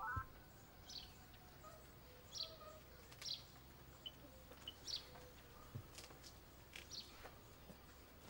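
Faint bird chirps: short high calls, one every second or two, over a quiet background.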